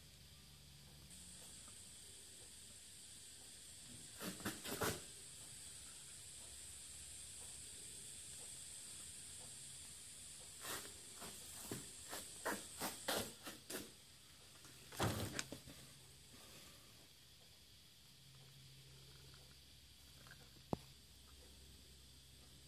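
Faint clicks and knocks of a plastic distributor cap being handled and moved on a bench, in three short clusters and a single sharp click near the end, over a faint steady hiss.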